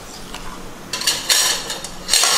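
A metal spoon stirs a sprouted mung bean salad in a stainless steel pot, scraping and clinking against the pot's side. The clatter comes in a quick run of strokes from about a second in.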